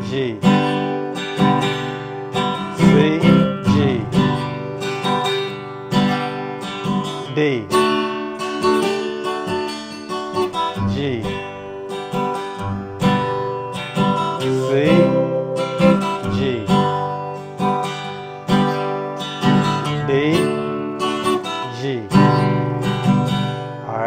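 Acoustic guitar in standard tuning strummed in a steady rhythm, playing the verse progression of G, C and D chords.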